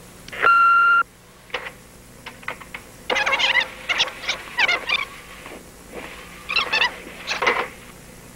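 A Panasonic cassette answering machine gives one steady beep about half a second in, marking the end of a message. A few light button clicks follow, then bursts of high, squeaky chirping from the machine as its tape is worked.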